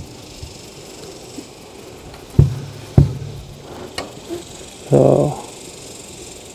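A 6.5 Creedmoor precision rifle built on a Howa 1500 heavy-barreled action fires once, about two and a half seconds in. A second sharp crack of about the same loudness follows half a second later.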